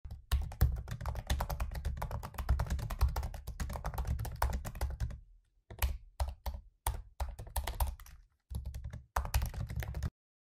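Typing on a computer keyboard: a fast, continuous run of keystrokes for about five seconds, then shorter bursts of typing broken by brief pauses.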